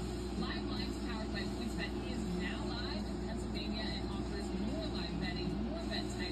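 Faint speech from a television sports broadcast over a steady low hum.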